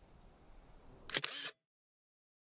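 Faint steady background, then about a second in a sharp camera click with a brief burst of handling noise, after which the sound cuts off abruptly.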